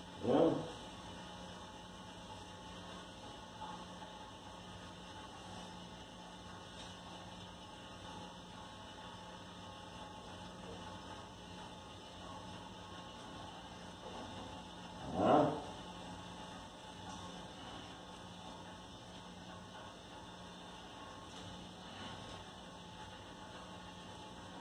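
Steady low electrical hum with faint room noise, broken twice by a short vocal sound: once just after the start and once about fifteen seconds in.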